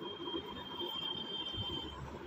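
Faint background hum and hiss with a steady high-pitched tone that stops just before the end.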